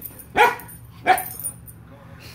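A dog barking twice, two short sharp barks about two-thirds of a second apart.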